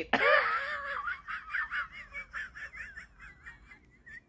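A woman laughing hard at her own joke: a loud burst of laughter at the start that trails off into a long run of short, high-pitched, squeaky pulses, about four a second, growing fainter.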